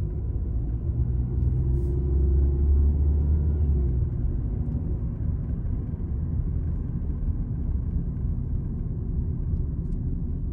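Low, steady rumble of a car's road and engine noise heard from inside the cabin while driving, swelling louder for a few seconds about a second in.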